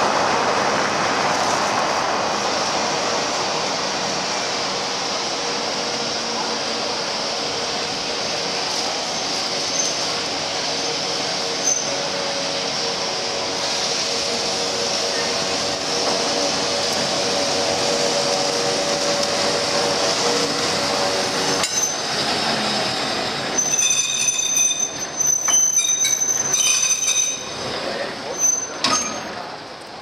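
Street traffic with a heritage electric tram moving along street rails. Near the end, as the tram passes close, its wheels squeal loudly and on and off against the rails, with some metallic clinks.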